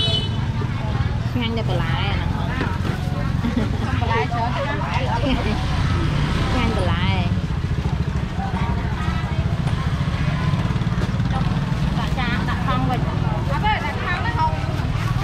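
A motorbike engine idles close by with a steady low drone, under people chattering.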